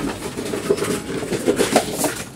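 Empty plastic bottles rattling and crinkling as they are handled and fed into a reverse vending machine's bottle opening, with a few sharper clatters in the second half.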